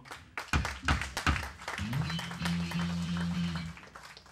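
Short applause and clapping from a small crowd, with a few loud drum hits in the first second and a half. A low note is then held through an amplifier for about two seconds.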